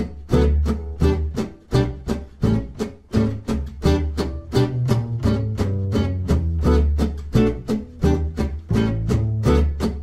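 Gypsy jazz swing music: acoustic guitar strumming short chords on every beat in an even rhythm, over a steady bass line.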